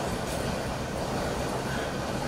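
Steady room noise with a low hum, picked up between speakers by the open microphones.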